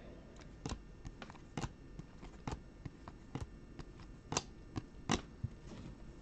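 Glossy refractor baseball cards being flipped through by hand one at a time: faint, irregular light clicks and snaps as the card edges slide off one another, the clearest about once a second.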